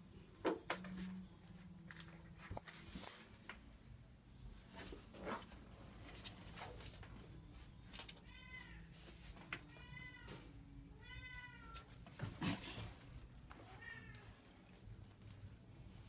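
A cat meowing: three short, arching meows about a second and a half apart in the middle, then a fainter fourth one. Scattered soft knocks and rustles can be heard around them.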